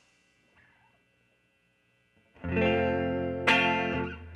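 Hollow-body electric guitar playing the opening chords of a blues song: near silence, then a chord struck about two and a half seconds in that rings out, and a second strum about a second later.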